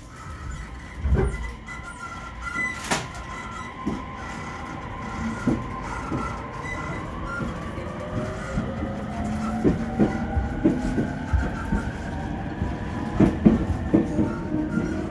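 JR East E231-1000 electric multiple unit with Hitachi IGBT VVVF inverter traction equipment, accelerating from a standstill, heard inside the car. The inverter and motor whine climbs steadily in pitch as the train gathers speed, and near the end the wheels knock over rail joints.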